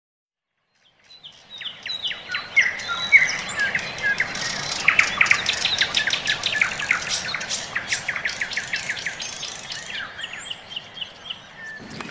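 Many small birds chirping and twittering in quick, overlapping calls, fading in about a second in and thinning out near the end.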